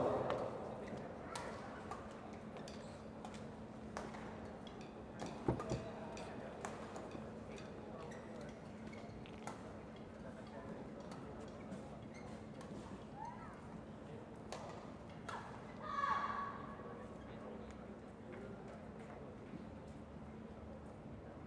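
Badminton doubles rally in a sports hall: scattered sharp clicks of racket hits on the shuttlecock and players' footwork on the court, over a steady low hum. A brief louder sound about sixteen seconds in, as the rally ends.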